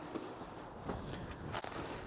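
A few faint knocks over a quiet, steady background hiss as the landing net and gear are handled against the side of the boat.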